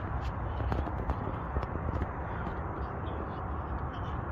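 Handling noise from a hand-held camera being moved about: irregular small clicks and rustles over a low, steady outdoor rumble.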